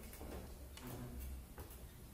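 Scattered light clicks and knocks from stage gear being handled and set up, over a low steady hum.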